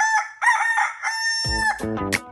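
A rooster crowing once: a few short syllables, then a long held note. Music with bass and guitar comes in at about one and a half seconds.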